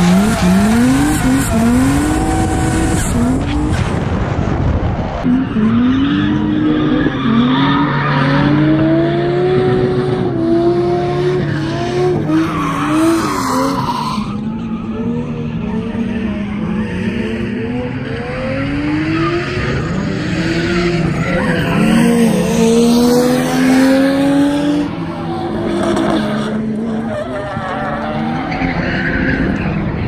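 Drift car engines revving hard, their pitch climbing and dropping back again and again, with tyres squealing and scrubbing as the cars slide sideways through the corners.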